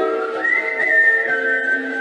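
Ukulele chords played under a whistled melody: the single clear whistled line slides up early on, steps down, then holds a long note through the second half.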